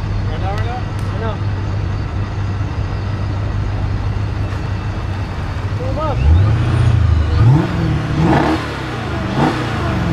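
Car engines idling at the line, then revved several times from about six seconds in, the pitch climbing and falling with each rev. Faint crowd voices can be heard under the engines.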